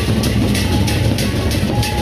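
Sasak gendang beleq ensemble playing: large two-headed barrel drums beaten with mallets, with a dense low drumming under a fast, steady rhythm of bright strokes about four times a second.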